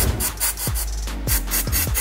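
Background electronic music with a steady beat, over short hisses of copper grease spraying from an aerosol can.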